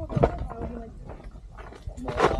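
A person's brief, indistinct voice, with scuffing steps on sandstone and gravel.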